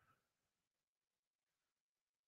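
Near silence: digital silence between the speaker's words.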